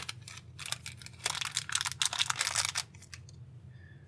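Thin metallized plastic pouch crinkling and tearing as it is ripped open and the part pulled out: a dense crackle for about two seconds that tapers off near the end.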